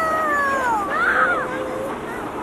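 A young child's high, wordless vocal cry: one long wail that slides down in pitch, then a shorter one that rises and falls.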